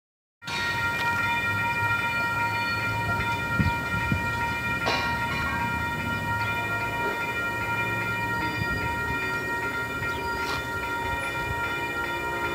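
Commuter train led by an MBTA HSP46 diesel locomotive, heard as a steady low rumble with several steady high tones held throughout, and a few short thumps about four to five seconds in.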